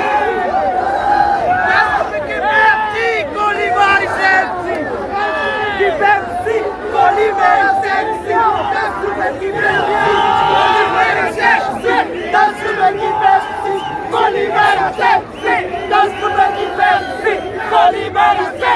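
A crowd of cricket fans shouting and cheering in celebration, many voices yelling at once. In the second half the noise falls into a regular rhythm.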